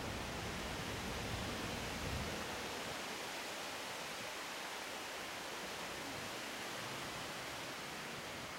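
Steady outdoor background hiss, with a low rumble underneath that drops away about two seconds in.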